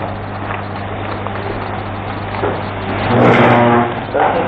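Steady low electrical hum with hiss from the room feed, with faint room noise. About three seconds in, a brief louder pitched sound rises over it for just under a second.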